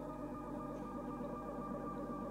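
Ambient electronic music: several synthesizer tones layered and held as a steady drone.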